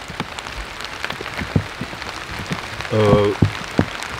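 Light rain: scattered drops ticking irregularly on fallen leaves, gear and the camera over a faint hiss. A man's short voiced sound comes about three seconds in.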